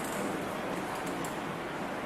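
Low, indistinct murmur of several people talking at once in a room, with no single clear voice.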